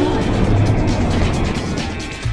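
Video-intro transition sound effect: a low rushing whoosh, like a passing car, with music mixed under it.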